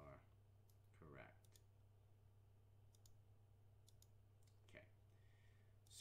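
Faint, scattered clicks of computer keys, a few single keystrokes spread over several seconds, over a steady low hum.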